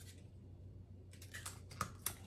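Faint light clicks and crackles of a Scentsy wax bar's plastic clamshell packaging being handled. They come as a quick run of several sharp clicks starting about halfway through.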